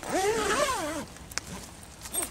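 Zipper on a canvas bell tent's door being pulled in one quick run lasting about a second, its buzz rising and falling in pitch as the pull speeds up and slows. A single click follows shortly after.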